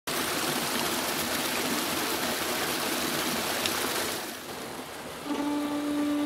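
A burn (small stream) burbling over rocks, dropping in level about four seconds in. Near the end a nyckelharpa starts with a held bowed note.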